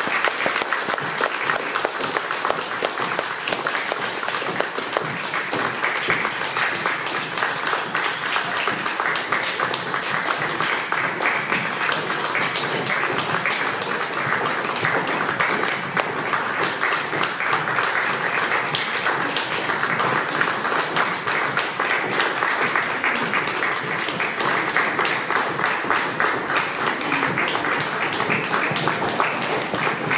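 Audience applauding steadily for about half a minute, welcoming a choir as it walks on.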